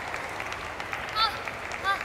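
Spectators clapping and cheering steadily between points in a table tennis match. Two short, high-pitched squeaks cut through, about a second in and again near the end.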